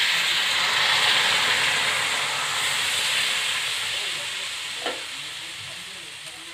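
Pancake batter sizzling on a hot iron griddle, loudest just after it is poured and slowly dying down as it sets. A short tap about five seconds in.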